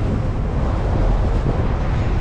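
Street traffic rumbling steadily, with wind buffeting the microphone.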